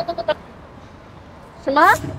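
Mostly speech: a woman says "Mā" ("Mom") near the end. Before that comes a short pulsing tone at one steady pitch that stops about a third of a second in, then a quiet stretch.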